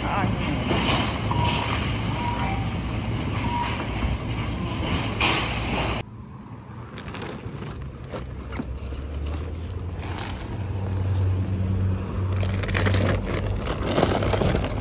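Busy supermarket checkout: background chatter with a few short electronic beeps. After a sudden cut about six seconds in, a steady low vehicle engine hum outdoors, with reusable shopping bags rustling as they are handled.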